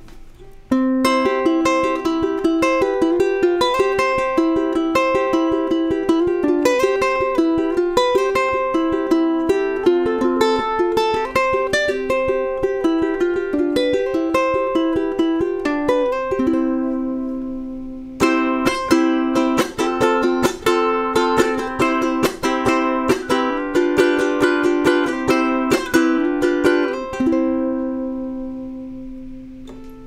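Kala KA-ATP-CTG-CE tenor ukulele, solid cedar top over an acacia laminate body, played solo with notes and chords. About halfway through a chord is left to ring and fade before the playing picks up again, and it ends on a chord that rings out.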